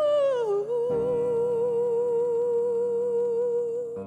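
Female singer holding one long vocal note with vibrato over piano, sliding down onto it about half a second in. A new piano chord comes in underneath about a second in.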